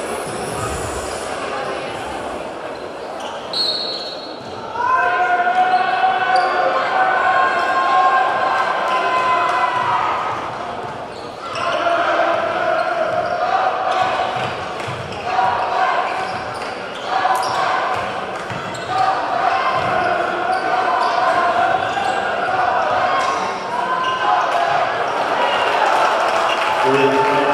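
Basketball dribbled on a hardwood court in a large, echoing gym, with voices calling out over it.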